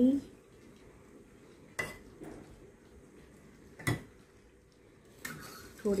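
A steel spoon clinking against small serving bowls a few times as tamarind chutney is spooned out, the loudest clink about four seconds in.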